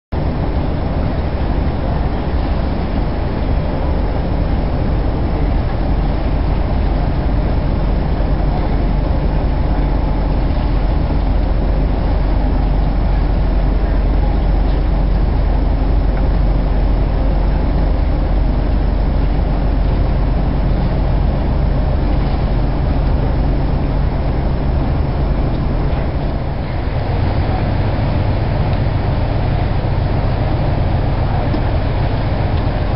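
Sailboat's engine running steadily: a continuous low hum that changes tone near the end.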